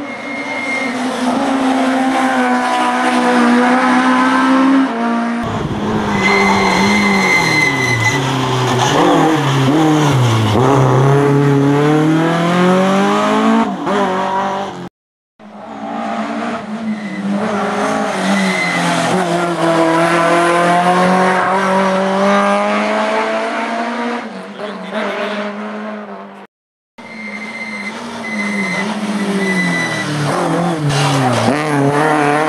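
Rally car engine revving hard, the pitch climbing through the gears and dropping off for braking and corners, with short high tyre squeals. The sound cuts off abruptly a few times, with two brief silences.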